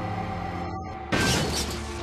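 Sustained background music; about a second in, a sudden loud crash cuts in for about half a second.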